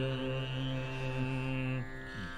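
A low male voice holds one long, steady note of a Kannada devotional song over a sustained drone accompaniment. The note ends shortly before the end, leaving the drone.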